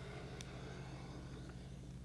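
Faint steady low hum with a light hiss, the background noise of an old recording, with one brief click about half a second in.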